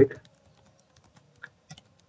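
Computer keyboard typing: a handful of faint, irregularly spaced key clicks.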